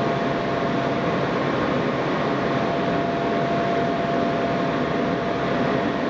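Steady running noise heard from inside a New York City subway car: an even rush of rail and car noise with a constant high whine over it.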